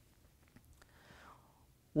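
Near silence, with one faint breath drawn in a little after a second in.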